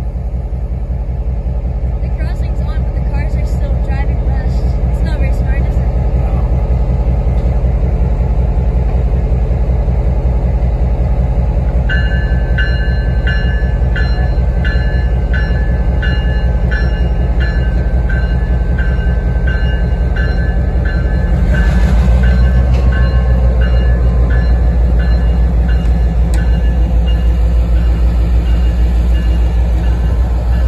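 Diesel-electric locomotive engine running loudly at close range as it moves its train forward. About twelve seconds in, a bell starts ringing in a steady repeated stroke. About twenty-two seconds in, the engine grows louder as it throttles up.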